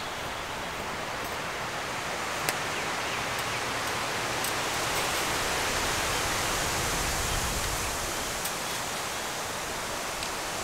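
Steady rushing of wind in the trees and on the microphone, swelling in the middle with a low rumble, then easing. A few faint clicks of small things being handled at the metal twig stove.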